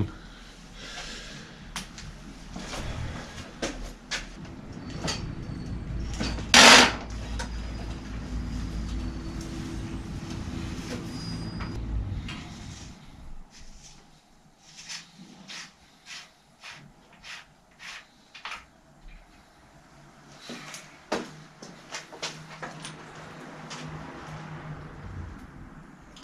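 Metal bicycle parts and tools being handled at a repair stand: scattered clicks and knocks, with one loud clatter about six and a half seconds in and a low rumble during the first half.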